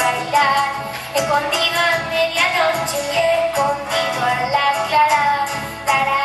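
A young girl singing a folk song into a microphone, accompanied by strummed acoustic guitars.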